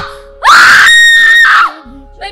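A young woman screaming into a handheld microphone held at her mouth: one long high scream that starts about half a second in, rises at its start, holds its pitch for about a second, then breaks off. In a deliverance session like this one, the screaming is taken for a spirit manifesting in her.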